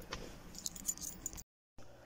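Faint, light jingling clinks of keys being handled over a quiet car-cabin hush, broken off about one and a half seconds in by a moment of dead silence at an edit.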